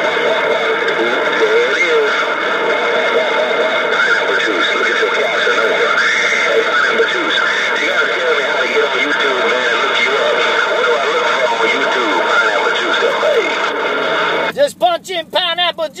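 Galaxy CB radio receiving a strong long-distance transmission: garbled, unintelligible voices buried in loud, steady static. The noisy signal cuts off about a second and a half before the end, and a clearer voice follows.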